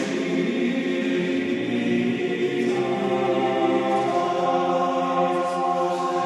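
Male choir of Dominican friars singing a Latin Marian chant in long held notes, moving to new pitches about two and a half seconds in.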